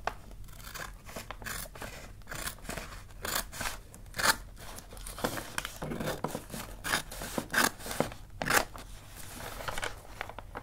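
Scissors cutting through wrapping paper in an irregular run of short snips, some much louder than others, with the louder cuts near the middle and towards the end.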